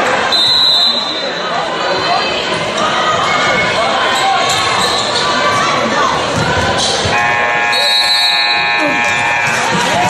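Gym scoreboard buzzer sounding for about two and a half seconds, starting about seven seconds in, over crowd chatter and game noise in a large hall. A short referee's whistle comes just after the start.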